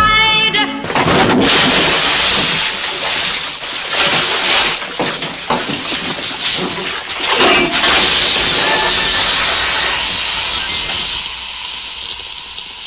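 Bathtub water splashing hard as a man thrashes in it, with sharp knocks among the splashes, then a loud electrical crackle and hiss from the electrocution that fades away near the end. A sung theme song ends in the first second.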